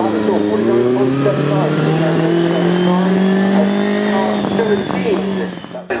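Vintage single-seater racing car's engine revving, its pitch climbing steadily over about three seconds and then holding. The sound cuts off abruptly just before the end.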